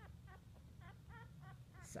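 Faint, short squeaks from a litter of nine-day-old French Bulldog puppies, repeating about three times a second.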